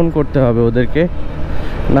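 Mostly a man talking while riding, over the steady low rumble of a Suzuki Gixxer motorcycle and wind noise. There is a short break in the talk from just past a second in, filled with a hiss of air, before he speaks again at the end.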